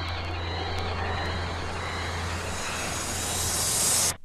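A noisy, droning passage in a thrash metal recording: a steady low hum under a hiss that swells brighter and rises toward the end, then cuts off abruptly.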